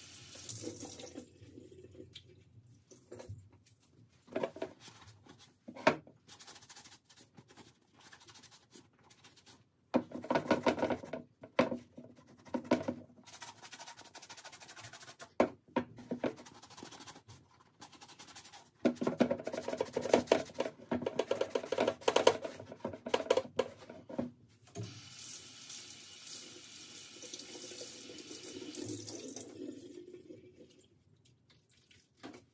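Water running from a sink tap onto a cleaning sponge at the start and again for the last few seconds. In between come two long bouts of a wet sponge being scrubbed over the leather of a boot, a rasping, scratchy rubbing, with scattered small knocks.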